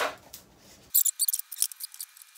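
Plastic packaging crinkling in a quick run of short, crisp crackles, starting about a second in, as a piece is pulled from a collectible figure's box.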